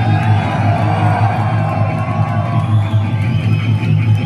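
Thrash metal band playing live: loud distorted electric guitar and bass over drums, with a bending guitar line in the first couple of seconds, heard from within the audience.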